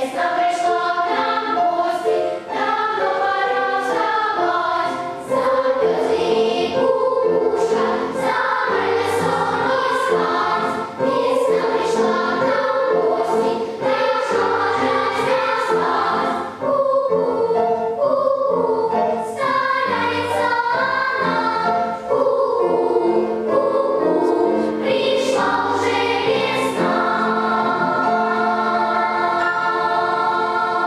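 A children's choir singing a song.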